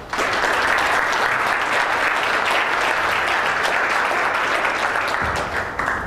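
Audience applauding: dense, steady clapping that starts abruptly and dies away near the end.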